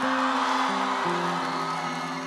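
A live band holding and changing the song's final notes, over an audience cheering and applauding as the song ends; the cheering is loudest early and slowly fades.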